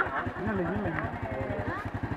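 Small motorbike engine idling with a rapid, even low beat, under people's voices.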